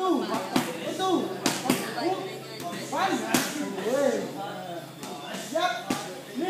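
Gloved punches smacking into Thai pads, about six sharp hits at uneven intervals, with short voiced calls in between.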